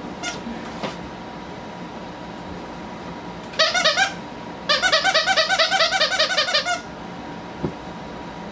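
Squeaker inside a plush dog toy squeezed by hand: a short run of squeaks about three and a half seconds in, then a rapid string of squeaks, about eight a second, for about two seconds.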